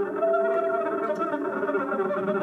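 Free-jazz trio playing an improvised passage: a dense tangle of overlapping held and shifting pitches, with no words.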